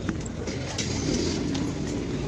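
Busy street ambience: a steady rumble of traffic, getting a little louder about a second in.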